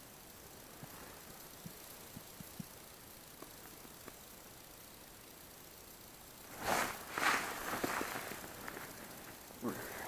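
Low background with a few faint ticks, then, about two-thirds of the way in, a couple of seconds of loud rustling and handling noise as the angler moves his arms in his jacket inside the small ice-fishing tent.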